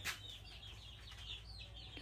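Chickens in a wire cage calling faintly: a string of short, high, falling peeps.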